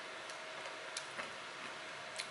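A few faint clicks from someone chewing a pickled onion with a closed mouth, over quiet room hiss.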